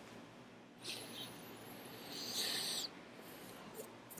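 A man breathing out into his cupped hands, a short breath about a second in and a longer, hollow one around two seconds in.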